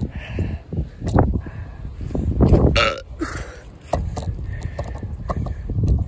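Wind buffeting a phone's microphone in low rumbling gusts, with scattered clicks and a short voice-like sound about halfway through.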